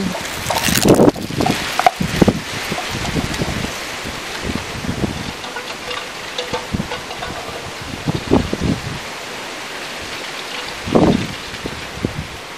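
Wind blowing outdoors: a steady rushing noise with a few brief louder gusts, strongest near the start and again near the end.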